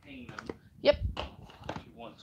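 Mostly speech: a short spoken "yep" and bits of quiet talk in a small room, with a few light clicks.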